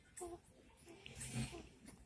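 A young baby making short, soft coos and a breathy grunt.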